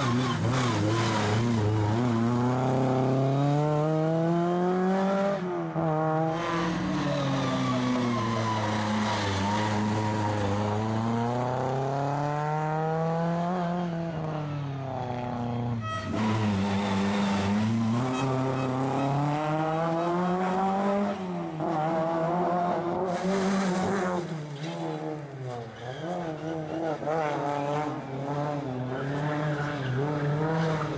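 Rally car engine driven hard, its pitch climbing under acceleration and falling back again and again as the driver works through the gears and lifts for corners. About halfway through, the sound changes abruptly and the same rising and falling engine note carries on.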